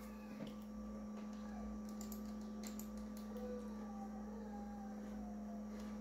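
A few faint, sharp clicks of a computer mouse as a web page link is clicked, over a steady low electrical hum.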